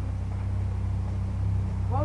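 A steady low rumble or hum, with a voice starting near the end.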